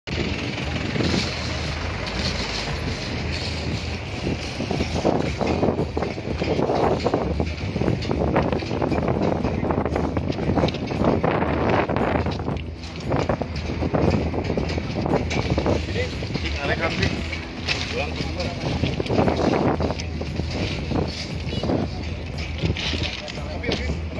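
Outdoor ambience of indistinct voices, with people talking in the background over a steady low rumble.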